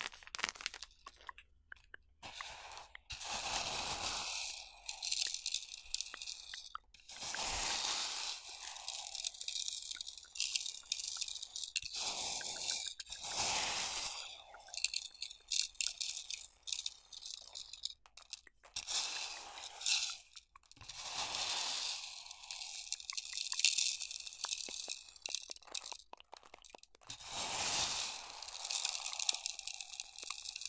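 Crunching and crinkling of a bag of corn chips, in repeated crackly bursts of a second or two with short pauses between.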